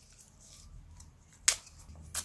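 Kaffir lime leaves torn by hand: a few faint crackles, then one sharp, crisp snap about one and a half seconds in as a stiff leaf splits.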